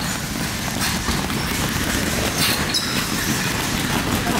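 Several boxers punching hanging heavy bags: a dense, overlapping jumble of thuds over a steady low rumble, with a few sharper smacks.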